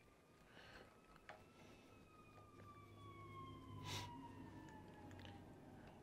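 Faint fire engine siren, one tone sliding slowly down in pitch over about five seconds. A light click sounds about four seconds in.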